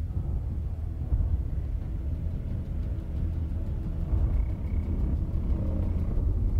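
Steady deep rumble in the film's soundtrack, strongest in the bass, with faint higher tones above it.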